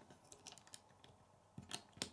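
Plastic Lego bricks clicking and tapping as pieces are handled and pressed onto a small model: a few faint clicks, then a louder cluster near the end.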